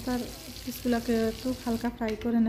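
Spice-coated fish pieces shallow-frying in oil in a nonstick pan, with a steady sizzle. A person's voice comes and goes over it.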